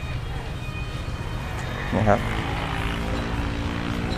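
Steady low rumble, joined about halfway through by the even drone of a running motor, with a short spoken word just before it.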